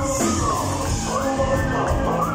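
Loud amplified live band music with a man singing over it, a continuous dense bass and drum bed under a gliding vocal line.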